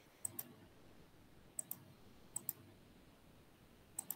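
Faint computer mouse double-clicks: three quick pairs of clicks about a second apart, and another pair at the very end.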